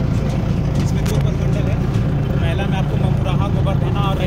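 Engine of an open-top safari vehicle running steadily while driving along a dirt track, with voices talking over it in the second half.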